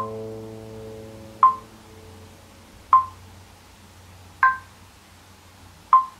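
A classical guitar chord rings on and fades away over the first two seconds. Sharp, even metronome clicks come about every second and a half.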